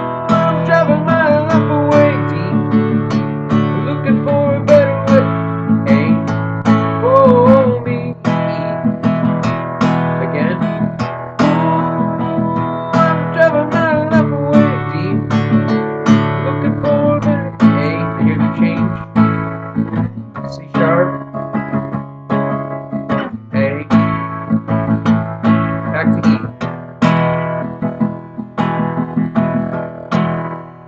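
Acoustic guitar strummed in a steady country rhythm, a down, down-up, down-up pattern on open E and A chords.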